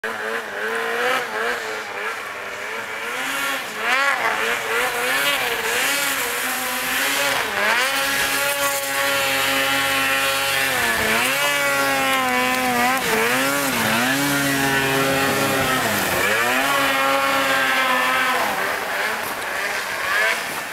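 Snowmobile engine revving, its pitch dropping and climbing again and again as the throttle is worked, with steadier stretches held at high revs.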